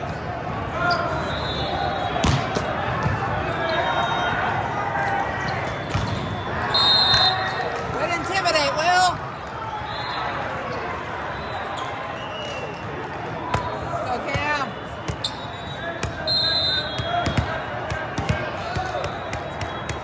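Echoing hall full of voices and shouts, with sharp thumps of volleyballs being hit and several short referee whistles. The loudest shouting comes about seven to nine seconds in, as a rally ends.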